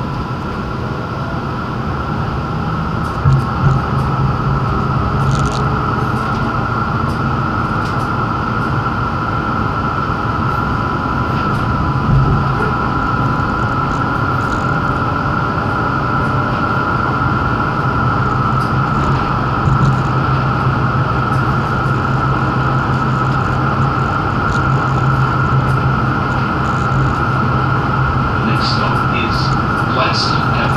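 Interior noise of a moving Melbourne tram: a steady rumble of wheels and running gear under a constant high tone. A few light clicks come near the end.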